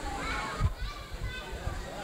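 Indistinct chatter of several people talking at once, voices overlapping, with no single clear speaker.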